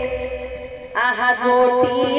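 Devotional kirtan music in which the barrel-drum strokes break off and a single held note carries on. About a second in, a voice starts chanting a sung line over it.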